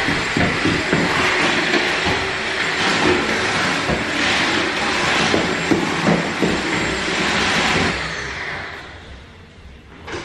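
Cordless stick vacuum running as it is pushed over a hard floor, a steady whirring rush with small knocks and clicks from the floor head. About eight seconds in the motor is switched off and winds down.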